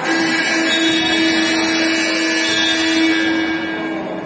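Basketball scoreboard horn sounding one long steady tone for about four seconds, calling a stop in play.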